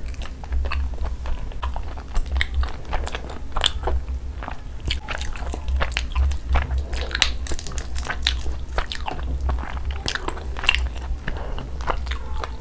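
Close-miked biting and chewing of tandoori chicken, with a dense run of small wet clicks, crunches and smacks throughout. A steady low hum runs underneath.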